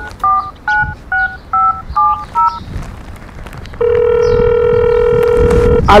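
Mobile phone keypad tones as a number is dialled: about eight quick two-note beeps. After a short pause comes one steady ringing tone of about two seconds as the call goes through.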